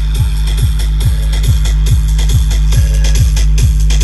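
Loud electronic dance music from a truck-mounted DJ sound system with a 22-bass setup: deep bass and a fast, steady kick beat, a little over three kicks a second, each kick dropping in pitch.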